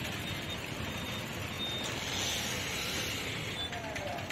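Road traffic ambience: a steady noise of vehicles on the street, with a few faint, short, high-pitched tones.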